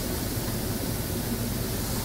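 Steady background hiss with a faint low hum: room tone, with no distinct sound event.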